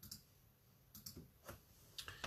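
Near silence broken by four faint, scattered clicks.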